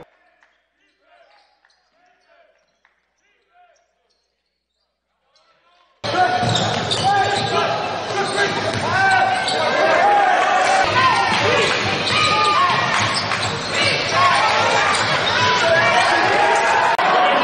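Quiet for the first few seconds. About six seconds in, the live sound of a basketball game in a gym cuts in suddenly: a ball bouncing on the hardwood floor amid crowd chatter and voices echoing around the hall.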